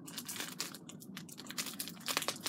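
Plastic packaging of a wig cap crinkling and crackling in the hands, a run of faint irregular crackles.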